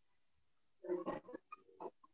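Near silence, then a faint, garbled voice in short broken bits from about a second in.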